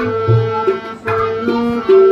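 Tabla playing a steady rhythm: deep booming strokes on the bass drum (bayan) under ringing, pitched strokes on the treble drum (dayan).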